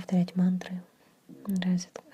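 Speech: a person talking, with a brief pause about a second in.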